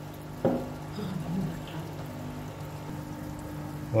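Aquarium equipment running: a steady low hum with a faint watery wash. There is one sharp click about half a second in.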